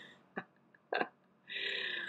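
A person's breath and mouth sounds: two small clicks, then a breathy exhale or sigh starting about three-quarters of a second before the end.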